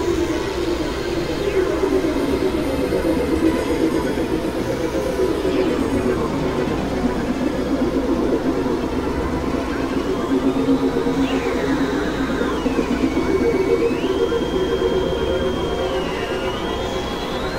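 Experimental synthesizer drone music: a dense, wavering drone with gliding tones over it. In the second half a high tone steps down and then back up.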